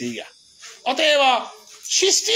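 A man's voice in a drawn-out, sing-song delivery: the falling tail of one phrase, a short pause, then a second phrase of about half a second. Faint high chirring, like insects, lies under the pause.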